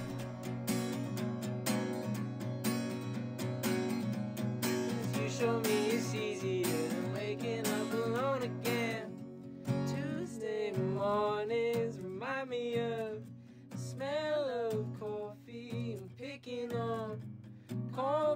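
Acoustic guitar song: steady strummed guitar, with a voice starting to sing about five seconds in.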